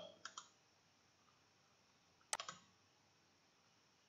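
Computer mouse clicking twice in quick succession, about two and a half seconds in, against near silence.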